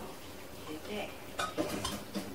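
Dishes and cutlery clinking at café tables, with a few sharp clinks about one and a half seconds in, over faint voices.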